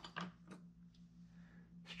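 Near silence: quiet studio room tone with a low steady hum and a few faint clicks in the first half second.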